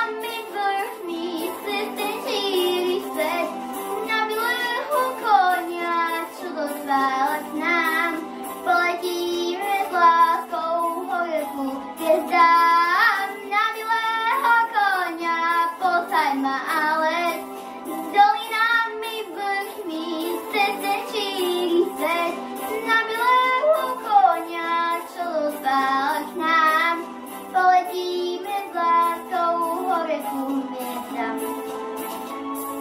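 A young girl singing a song into a handheld microphone over instrumental accompaniment with a steady beat.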